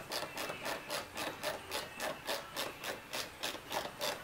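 A stainless screw being turned by hand with a screwdriver into a kayak fitting: an even run of short rasping strokes, about four a second, as the screw is snugged up.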